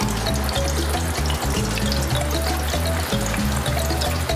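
Batter-coated chicken wings deep-frying in the wire basket of a commercial fryer: a dense, steady sizzle and crackle of hot oil. Background music plays underneath.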